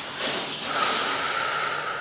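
A long audible exhale, a steady breathy hiss lasting about two seconds, taking on a faint whistle partway through and cutting off at the end, breathed out while holding a deep hip stretch.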